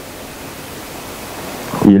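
Steady hiss of the recording's background noise, slowly growing louder, before a man starts speaking near the end.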